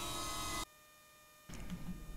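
Faint steady background noise with a thin hum. It drops to dead silence a little over half a second in, and faint noise returns about a second later.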